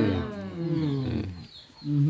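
A man's voice drawn out in one long, low, wavering tone that falls in pitch and fades out about one and a half seconds in, as the family prostrates.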